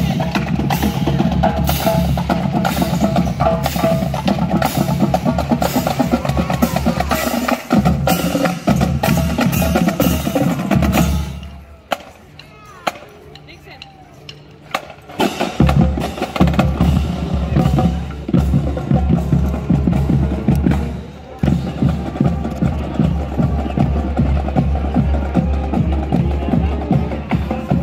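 High school marching band playing in a parade, with bass and snare drums prominent under the band's tune. Near the middle the band drops away for about four seconds, leaving only faint background sound, then the drums and band come back in.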